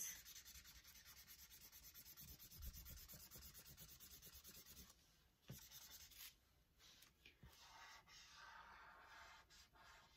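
Faint scratching of a felt-tip marker colouring in on paper, with quick, even back-and-forth strokes. It pauses briefly about five seconds in, with a light tap, then goes on more faintly.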